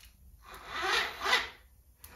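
Electric starter of a Chinese ATV engine turning the engine over sluggishly in one short rasping attempt that swells twice and dies away after about a second and a half. The weak crank is the sign of a flat battery.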